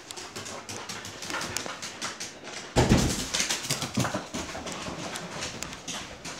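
A pet dog close to the microphone, making small excited whimpering sounds as it begs to play, with its claws clicking on the floor. A louder thump comes about three seconds in.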